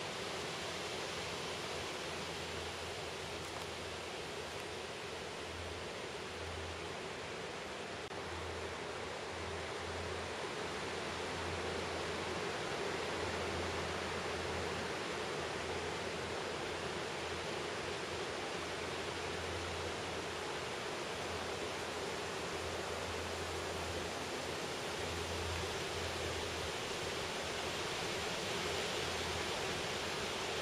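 Steady, even hiss of open-air background noise, with a faint low rumble that comes and goes.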